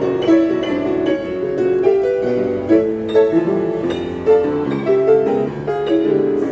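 Upright piano played four-hands: a classical piece played from memory, with a second player adding chords. The notes come quick and clearly struck.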